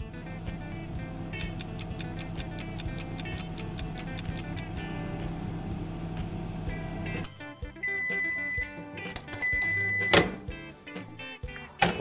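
Microwave oven running with a steady low hum, which stops about seven seconds in; then two long, high beeps signal the end of the heating cycle, followed by a sharp click. Background music plays throughout.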